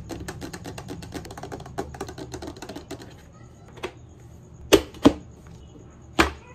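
Fingernails tapping rapidly on the hard plastic top of a folding bed table for about three seconds, then a few sharp plastic clacks, the loudest two close together near the end, as its legs are folded.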